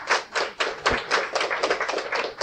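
An audience clapping as a spoken-word piece ends, many separate claps in an irregular patter.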